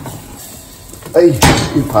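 A sharp metal knock of cookware being moved on a gas stove's grate, about one and a half seconds in, with the faint sizzle of an omelette frying in a skillet underneath.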